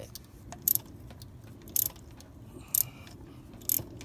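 Hand ratchet wrench clicking in short strokes as an old spark plug is unscrewed, four brief clicks about a second apart.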